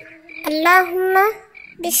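Night-time ambience of short, high chirps repeating about every half second, with a child's voice murmuring for about a second in the middle.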